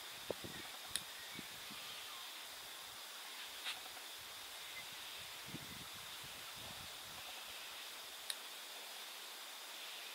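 Bonsai scissors snipping juniper twigs: a few short, sharp snips spaced out over several seconds, the clearest about a second in and near the end, with faint rustling of the foliage.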